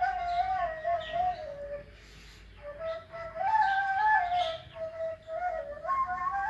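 Cane ney (end-blown reed flute) playing a slow, breathy melody that steps downward. It breaks off for a breath about two seconds in, then rises again and winds back down.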